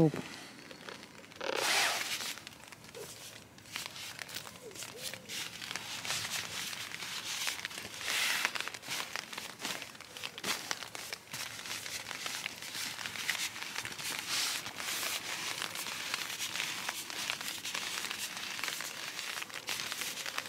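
A sleeping bag being stuffed and pressed down into its fabric stuff sack: irregular rustling and crinkling of fabric, with louder bursts about two seconds and eight seconds in.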